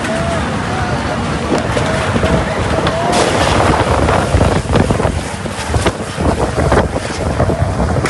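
Storm wind and rain blasting across the microphone in a loud, continuous rush, with voices calling out in the first few seconds and a few sharp knocks between about three and seven seconds in.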